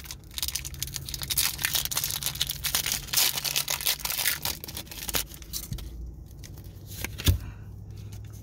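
Pokémon booster pack's foil wrapper torn open and crinkled as the cards are pulled out. The crackling lasts about five seconds, then gives way to quieter handling and one sharp thump about seven seconds in.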